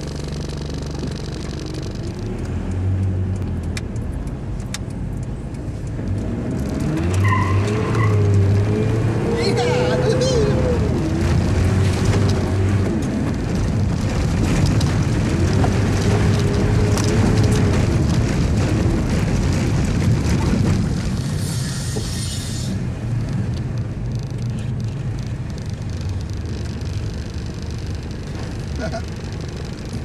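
Mitsubishi Delica L300 4WD van driven over a rough alley, heard from inside the cabin: the engine rumbles and its pitch rises and falls several times as the van speeds up and slows, with many knocks and rattles from the body over the bumps. A short laugh comes near the end.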